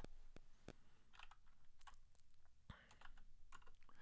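Faint keystrokes on a computer keyboard: a scattering of separate, irregular clicks as a few characters are typed.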